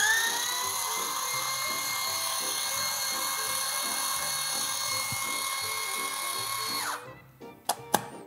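Electric citrus juicer's motor running with a steady high whine while it presses an orange, then shutting off about seven seconds in, the pitch dropping away. A couple of sharp clicks follow near the end.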